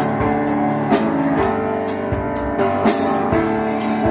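A live worship band playing an instrumental passage on drum kit, guitar and keyboard, with a steady beat of about two drum and cymbal hits a second.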